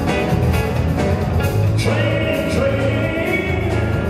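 Live rock and roll band playing an uptempo number on drum kit, electric bass and saxophone, with a male singer. A long note is held from about halfway through.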